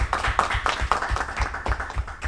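A small group of people applauding, a dense run of hand claps.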